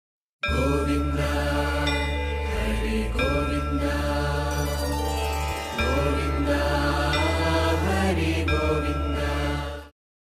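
Chanted devotional mantra set to music over a steady low drone, the channel's intro jingle. It starts about half a second in and fades out near the end.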